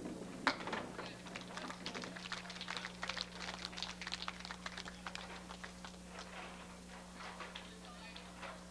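Scattered audience applause, individual claps thinning out and fading over the first five or six seconds, over a steady low hum.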